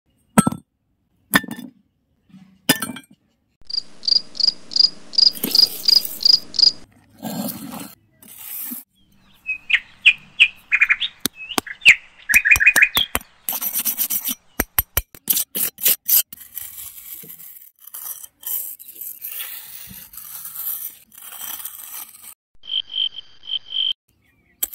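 Short cut-together pieces of chirping: a regular run of high chirps, about three a second, then quicker gliding bird-like chirps and another run of chirps near the end, with sharp clicks and taps in between.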